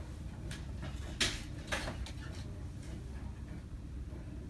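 A few soft knocks and rustles, about three within two seconds, as someone settles onto a bed and handles things on it, over a steady low room hum.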